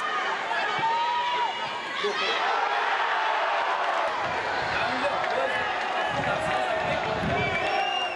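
Football stadium crowd noise: many voices shouting and cheering together at a goal, a steady, dense din.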